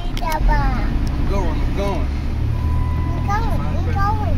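A young child's high voice in short calls and sung phrases inside a minivan's cabin, over the vehicle's steady low rumble.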